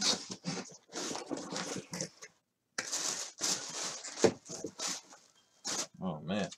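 Rustling and scraping of a cardboard box being set on a desk and rummaged in to pull out a packaged jersey: a run of short, rough rustles with gaps between them.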